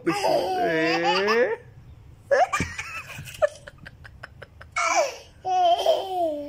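Toddler laughing: a long, wavering laugh in the first second and a half, then, after a short lull, more bursts of giggling near the end.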